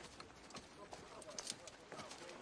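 Faint, irregular clip-clop of horse hooves mixed with footsteps on forest ground.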